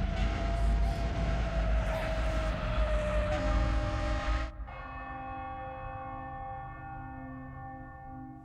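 Film soundtrack from a night scene with a car and a tanker truck: a heavy low rumble under a long held tone, cut off suddenly about four and a half seconds in by a ringing bell-like tone that fades slowly.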